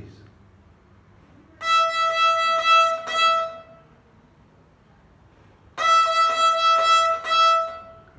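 Violin's open E string bowed in a rhythm of four quick sixteenth-note strokes followed by two eighth notes, played twice with a rest of about two seconds between the phrases.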